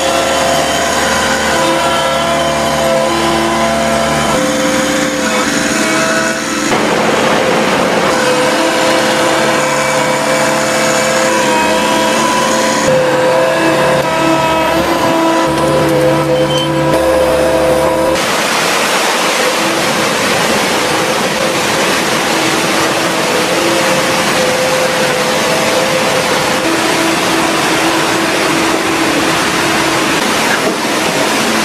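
Heavy equipment engines running, with steady whining tones that shift several times; about eighteen seconds in the sound turns rougher and noisier.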